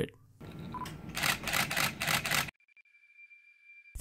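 A Nikon D5200 DSLR's shutter and mirror firing in a rapid continuous burst, about five clicks a second, starting about a second in and lasting about a second and a half, then stopping abruptly.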